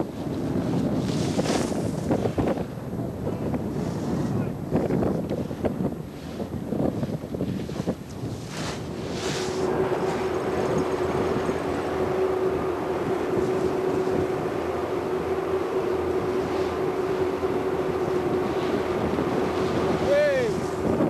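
Wind buffeting the camcorder microphone in uneven gusts. About halfway through, a steady mechanical hum with a single held tone settles in under the wind.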